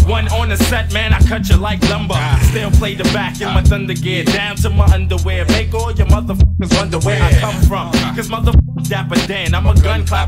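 Hip hop track playing from DJ turntables: a rapper over a drum beat and a deep bassline. The sound cuts out briefly twice, about six and a half and eight and a half seconds in.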